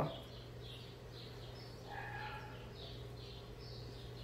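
Faint bird chirping, a short high chirp repeated about twice a second, over a steady low hum.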